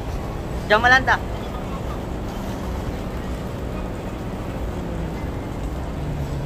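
Steady low rumble of a busy indoor bus-terminal concourse, with a man saying one short word about a second in.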